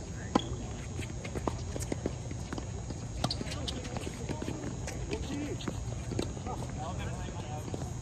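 Tennis ball struck by rackets and bouncing on a hard court during a doubles rally: sharp, hollow pocks at irregular intervals, the loudest just after the start, over a low steady hum.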